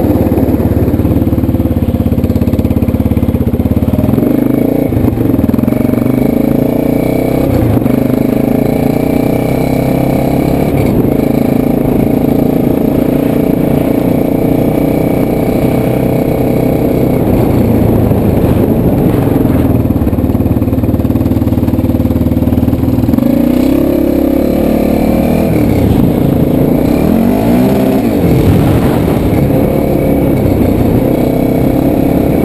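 A 2005 DS650X quad's single-cylinder four-stroke engine running under way, loud and continuous. Its pitch shifts about four seconds in and rises and falls several times near the end as the throttle is worked.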